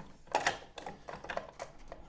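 A small tool working at the stiff plastic air brake flaps of a large scale model. A scrape about half a second in is followed by a run of light plastic clicks as the flaps resist opening.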